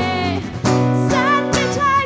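Acoustic folk-pop song: a steel-string acoustic guitar strummed in chords while a woman sings long held notes with vibrato.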